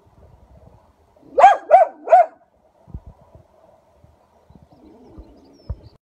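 An animal gives three short, high barks in quick succession, about a third of a second apart, each rising then falling in pitch. A few faint clicks follow.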